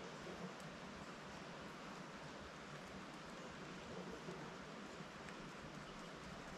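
Faint steady hiss with a few light clicks as small drone frame parts are handled during assembly.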